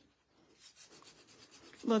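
A paper wipe rubbing over a metal nail-stamping plate, cleaning stamping polish off the plate. It is faint and scratchy, starting about half a second in.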